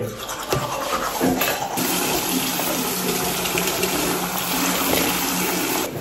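A few light knocks, then a steady rushing hiss with a faint low hum that sets in a little under two seconds in and holds.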